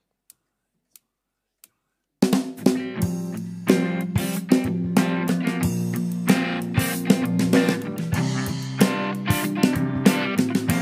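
Three faint, evenly spaced clicks, then about two seconds in a live worship band comes in all together and plays a song intro: drum kit with snare, kick and hi-hat under electric guitar and keyboard.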